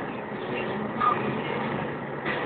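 Steady engine and tyre noise heard inside the cab of a vehicle driving on a snow-covered road.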